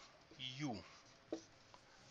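Dry-erase marker on a whiteboard, with one short stroke about a second and a quarter in as a number is crossed out. A man's drawn-out 'uh' comes just before it.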